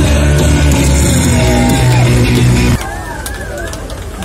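Live punk rock band playing loudly with guitars and drums, the song ending abruptly about three-quarters of the way through. The crowd's voices and shouts follow.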